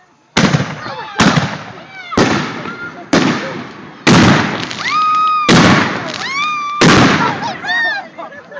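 Aerial fireworks going off: a run of seven loud bangs about a second apart, each trailing off in an echoing tail.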